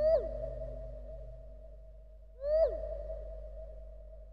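Two identical swooping calls in an ambient electronic piece, the second about two and a half seconds after the first. Each rises quickly, falls steeply away, and leaves a held tone that slowly fades.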